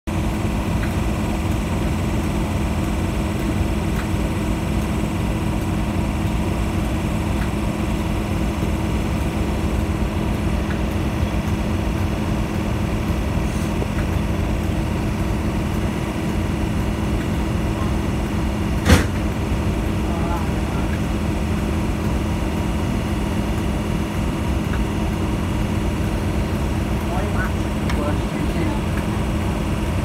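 Class 37 diesel locomotive's engine idling with a steady hum, with one sharp click a little past the middle.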